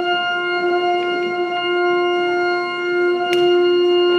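Church organ holding one long, steady single note.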